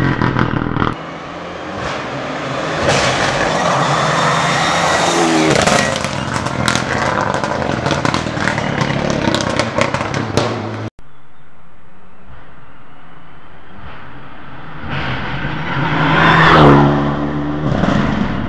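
Rally car engine at full throttle, revving hard through gear changes as the car pulls away and fades. After an abrupt cut, the car of a second passage approaches and goes by close, loudest near the end, with its revs climbing.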